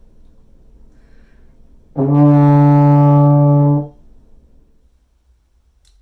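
Baritone horn playing a single held D, the D on the third line of the bass staff, fingered with the first and second valves. The note starts cleanly about two seconds in, holds steady for about two seconds and then stops.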